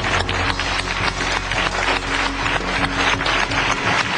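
An audience applauding: a dense, steady patter of many hands clapping, with sustained low notes of a music bed underneath.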